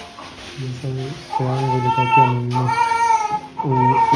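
Slow singing with long held notes, growing louder about a second in.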